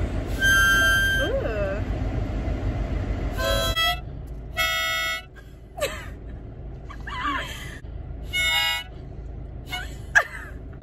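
Harmonica blown in a few short, separate notes and chords, about four in all, with laughter between them.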